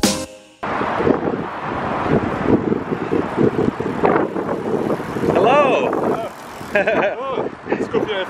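Wind buffeting the microphone and rolling noise while riding a recumbent trike on a paved path. From about four seconds in, voices talk and laugh over it.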